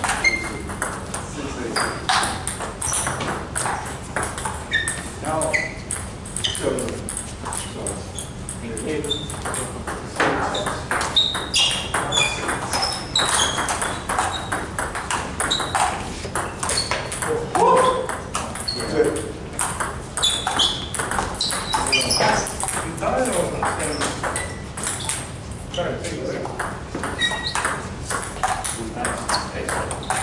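Table tennis rallies: plastic balls clicking off bats and tables in quick, irregular succession, from several tables at once, with voices in the background.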